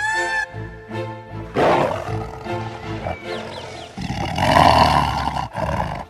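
Tiger roaring twice over background music: a short roar about one and a half seconds in, then a longer, louder one about four seconds in.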